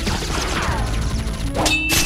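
A single sharp metallic clang near the end, ringing on afterwards, over steady background music.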